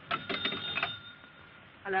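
Telephone bell ringing in one short burst of rapid strikes, the ring dying away about a second and a half in.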